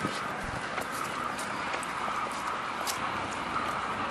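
A run on grass behind a running dog: a steady rushing noise of movement and air on the microphone, with a few faint light clicks.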